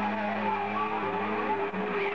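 Live rock band playing: a distorted electric guitar bends notes up and down over a held low note.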